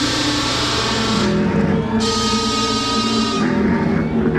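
Industrial metal band playing live through a large stage PA: distorted electric guitar and bass over drums, with no singing. Two loud crashes ring out about two seconds apart, each lasting over a second.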